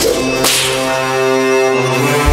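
Dramatic TV background score: a sharp whip-like swish about half a second in, then a held, sustained chord.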